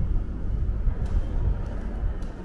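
Low, unsteady rumble of moving air buffeting the microphone at an open doorway.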